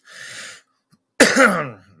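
A man clearing his throat: a short breathy rasp, then about a second in a single loud cough that drops in pitch.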